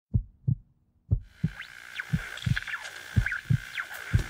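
Heartbeat sound effect: pairs of low thumps, about one pair a second. A little over a second in, a steady hiss with a high whine and short falling whistles joins it.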